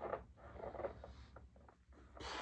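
Faint rustling and soft scraping from a person pressing dumbbells on a weight bench, with a soft breath near the start and a few small clicks.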